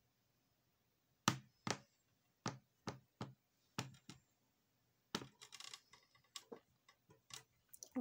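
A series of sharp clicks and knocks, several in quick pairs, starting about a second in, followed by a quicker run of softer clicks and light rustling.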